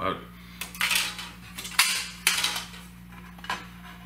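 A series of clinks and clatters as the hard parts of an LED flood light's housing are handled and knocked together. A steady low hum runs underneath.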